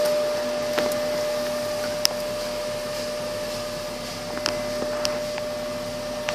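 Steady hum of a running 2011 Jeep Patriot with its 2.4-liter engine, heard from inside the cabin, carrying a single held tone. A few light clicks come through, about two seconds in and again near the end.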